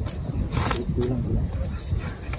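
A man's low, murmured voice reciting an Islamic prayer in Arabic at a graveside.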